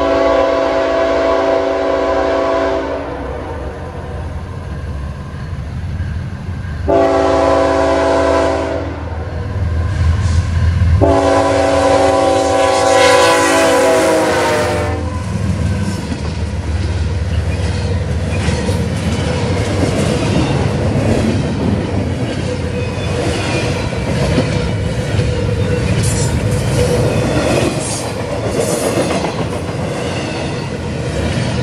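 CSX diesel freight locomotive's multi-note air horn sounding three blasts for the crossing, the last held about four seconds and dropping in pitch at its end as the locomotive passes. Then the train rolls through: a heavy engine rumble and the freight cars' wheels clattering over the rail joints.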